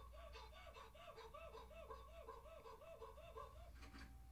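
Near silence, with a faint, regular chirping: short rising-and-falling tones repeating about three to four times a second, stopping just before the end.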